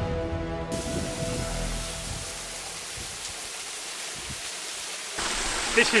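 Background music fading out over the first two seconds, giving way to the steady rush of a waterfall running low on water after a dry spell. The rush grows louder near the end.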